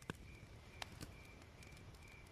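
Faint night ambience: crickets chirping in short, evenly repeating pulses, with a few sharp crackles from a fire.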